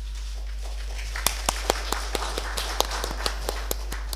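Light applause from a small audience. It starts about a second in, with separate claps at about four a second, and fades away.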